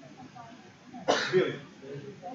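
A person's cough, one short burst about half a second long, about a second in.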